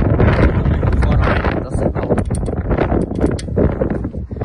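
Wind buffeting the microphone, a heavy low rumble, with a few light clicks about two to three seconds in.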